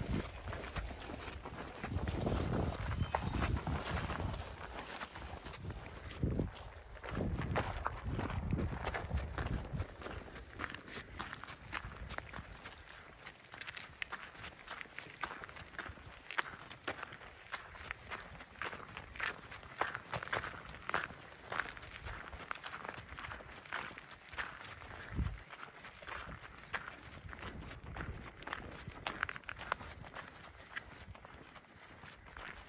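A hiker's footsteps walking steadily along a trail, each step a short crunch, with some low rumble on the microphone in the first several seconds.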